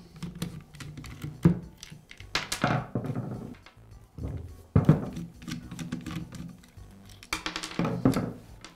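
A flat-blade screwdriver unscrewing the plastic motor-brush caps of a DeWALT drill, with a few sharp clicks and taps as the caps and brushes are handled and set down, over soft background music.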